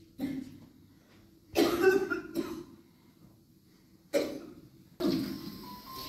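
A man coughing a few times in short separate fits, the loudest about a second and a half in. Music comes in near the end.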